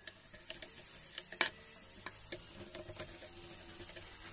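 Small hand chisel cutting into wood: scattered light clicks and ticks as the blade digs and scrapes, with one sharper click about one and a half seconds in.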